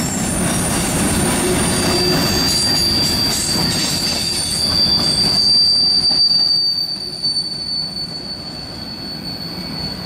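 Freight cars of a CSX manifest train rolling past, wheels and cars rumbling and rattling on the rail. About two seconds in, a steady high-pitched wheel squeal starts and holds. The rumble eases off somewhat after the middle.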